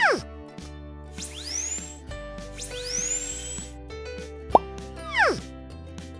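Background music with cartoon sound effects laid over it. A falling 'bloop' comes right at the start, two rising whistles follow in the middle, and two more falling bloops come near the end.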